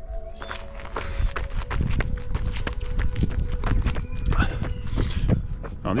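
A runner's footsteps on a dirt track, with wind rumbling on the camera's microphone.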